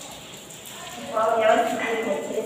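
A person's voice, starting about a second in after a quieter first second.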